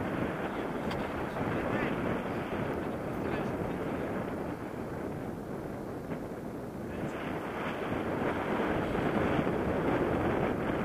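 Wind rushing over the action camera's microphone in flight under a tandem paraglider, a steady noise that grows louder in the last few seconds.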